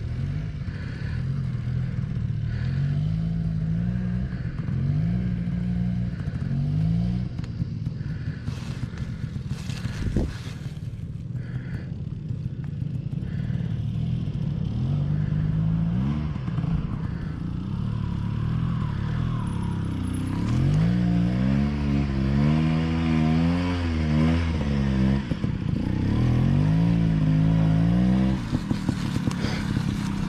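Dirt bike engine idling with repeated short throttle blips that rise in pitch, and a single sharp knock about ten seconds in. In the last third the revving is longer and rises and falls quickly as the bike pulls away over slick ground on trials tyres.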